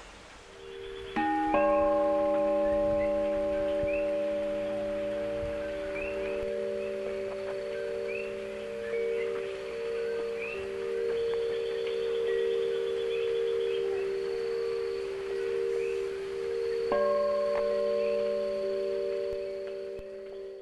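Struck bell tones, several pitches sounding together and ringing on for many seconds with a slow wavering pulse; they are struck afresh near the end.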